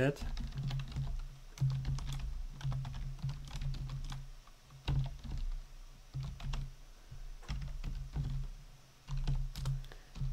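Computer keyboard typing: irregular key clicks in short runs with pauses between them, over a low hum that comes and goes.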